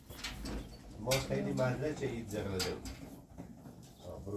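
Indistinct talking in a small room, broken by a few sharp knocks.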